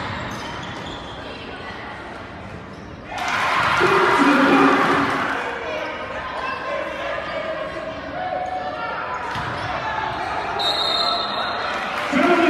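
Basketball dribbled on a gym's hardwood floor amid voices echoing through the large hall, with a sudden loud burst of voices about three seconds in and a brief high tone near the end.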